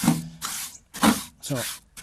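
A man speaking, with drawn-out hesitation sounds. No distinct non-speech sound stands out.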